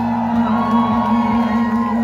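Live punk rock band holding a sustained chord on amplified guitars and bass while the concert crowd shouts and whoops along in a large hall.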